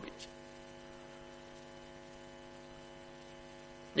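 Faint, steady electrical hum made of several steady tones, unchanging throughout.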